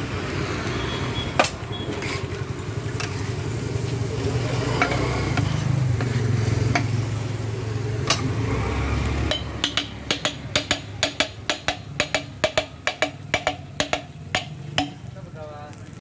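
Rapid metal clanks, about three a second from roughly nine seconds in, of a steel spatula striking a flat iron griddle, with frying on the griddle. Before that, a steady low rumble of road traffic with a few scattered knocks.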